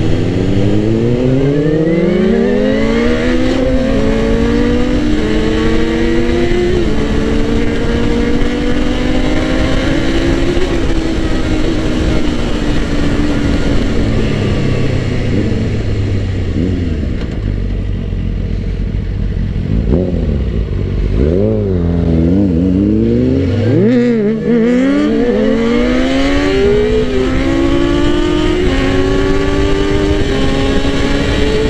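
Suzuki GSX-R600 inline-four engine under way: the revs climb through several quick upshifts, hold steady while cruising, then fall away as the bike slows. After that the revs rise and fall quickly several times before the engine pulls up through the gears again.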